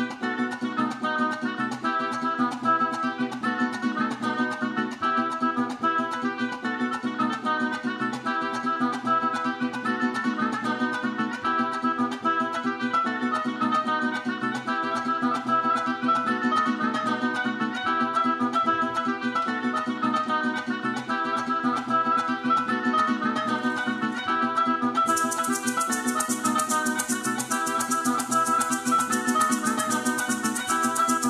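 Live-looped arrangement of a Venezuelan piece: layered plucked-string accompaniment under an oboe melody. From about 25 seconds in, maracas join in a fast, steady shake.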